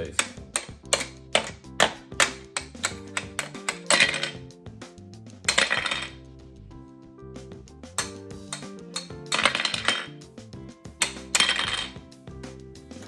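Plastic toy hammers tapping on the plastic ice blocks of a Don't Break the Ice game: quick sharp taps about three a second, then a few longer clattering knocks further on. Background music plays underneath.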